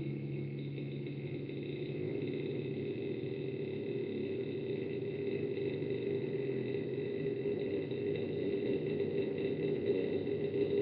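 Electric guitar through an amplifier, quiet between passages: a held chord dies away in the first second, leaving a steady amplifier drone with a faint high whine.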